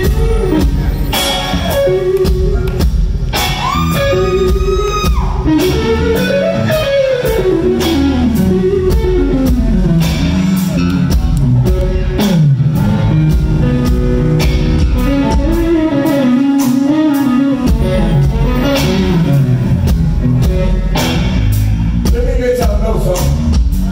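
Live rock band playing: a Stratocaster-style electric guitar takes a lead line of bent and sliding notes, with one long held high note about four seconds in, over drum kit and bass.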